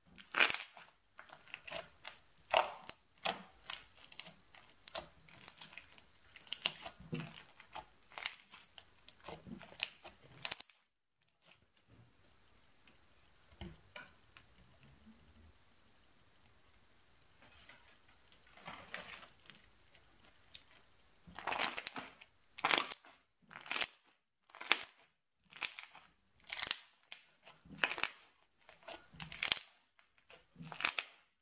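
Crunchy slime being squeezed and pressed by hand, giving crackling, popping clicks. The crackling runs thickly for the first ten seconds or so, goes much quieter for several seconds, then comes back as a string of loud crackling squishes about once a second.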